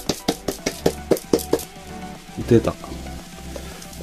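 Plastic rearing bottle packed with beetle-rearing substrate being worked over a tray: a quick run of rattling knocks, about five a second, for the first second and a half, as the packed substrate is loosened and tipped out.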